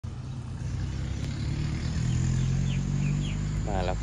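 A low, steady engine drone that grows slightly louder, with a few short high chirps about halfway through.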